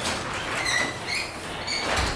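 Scraping noise with a few short, high squeaks: a plastic fluorescent tube guard sliding and rubbing along the floor as it is moved.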